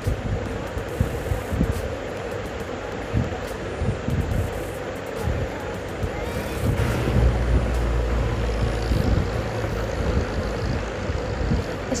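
Steady road and wind noise of a moving car, with low rumbling wind buffeting on the microphone that is strongest about seven to nine seconds in.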